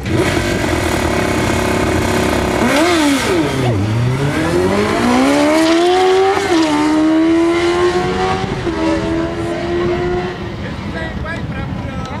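Drag-racing sport motorcycle's engine held at steady high revs on the starting line, then launching: the revs dip and recover, climb through gear changes about six and a half and nine seconds in, and fade as the bike runs away down the track.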